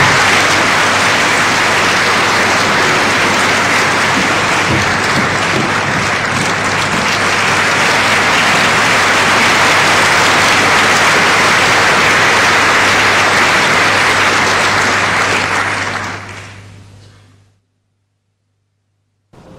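Theatre audience applauding steadily, the clapping dying away about sixteen seconds in.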